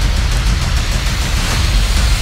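Trailer soundtrack music with a heavy low bass, playing through the video's audio.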